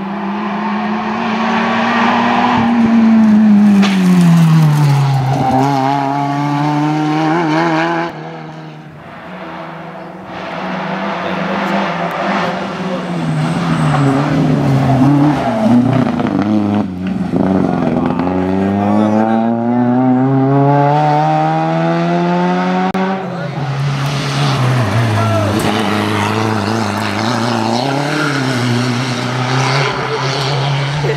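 Hillclimb race cars passing one after another at speed, each engine note climbing and dropping repeatedly as the cars accelerate and shift gear through the bends.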